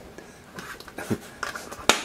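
Small wooden box of end mills being handled and its hinged lid shut, ending in one sharp wooden clack near the end.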